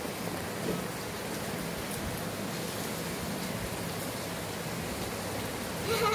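Steady hissing background noise with a faint low hum underneath, even throughout.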